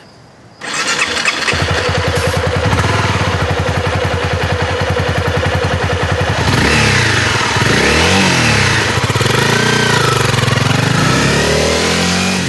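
Sport motorcycle engine starting about half a second in, then idling with an even, steady pulse. From about six seconds in the revs rise and fall as the bike is ridden.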